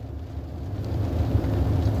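Low vehicle rumble heard from inside a car cabin, growing gradually louder.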